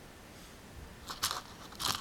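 Aquarium gravel crunching and clicking under a red-eared slider turtle moving in a shallow tank: a few short crunches, loudest a little over a second in and again near the end.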